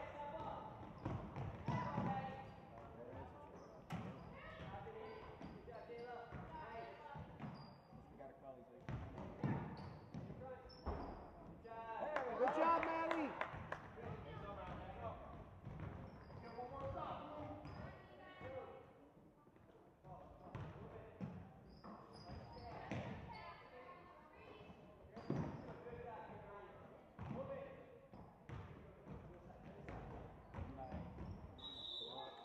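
Basketball bouncing on a hardwood gym floor during play, with scattered voices of players and spectators and a louder shout about twelve seconds in.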